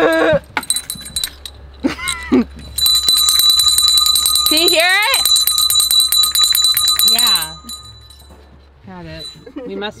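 Bells jingling in rapid, even strokes with a high ringing tone, first briefly just after the start, then steadily for about four and a half seconds from about three seconds in. A voice calls out briefly over the jingling.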